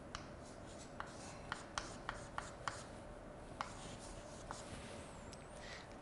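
Chalk writing on a blackboard: faint scratching of chalk strokes with a scatter of short, sharp taps where the chalk meets the board, most of them in the first half.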